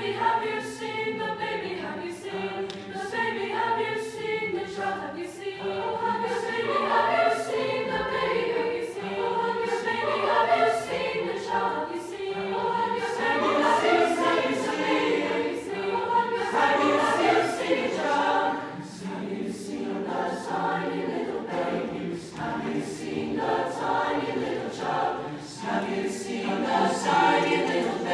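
Large mixed choir singing a Christmas song, sustained and full-voiced, with grand piano accompaniment.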